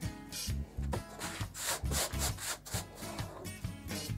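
Pine wood being hand-sanded with a small piece of sandpaper worked into a notch: a run of short back-and-forth rubbing strokes, densest near the middle, over background reggae music with a steady beat.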